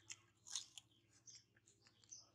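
Faint, irregular crunching of crisp green fruit being bitten and chewed by a baby macaque: a handful of short crisp clicks scattered over two seconds.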